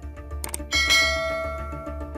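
A short click, then a bright notification bell chime rings and fades, the sound effect of a subscribe-button animation, over background music with a steady beat.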